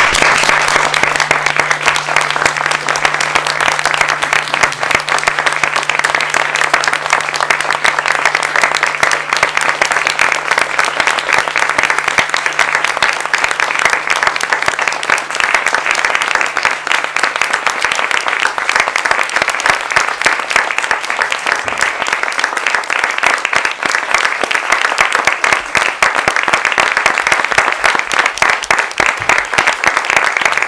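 A theatre audience applauding: dense, steady clapping that breaks out all at once and keeps going without a let-up.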